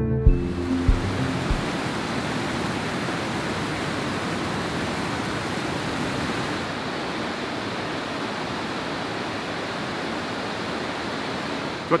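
River Mellte waterfall and rapids: a steady rush of falling water. Background music fades out in the first second or so.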